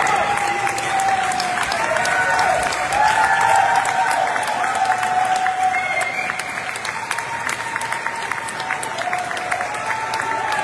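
Applause from a small audience, a dense patter of clapping with voices talking over it, after the last point of a match.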